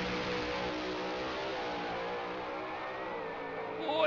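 Supercharged alcohol funny car engine at full throttle on a drag-strip pass, a steady dense engine note with the pitch dipping near the end.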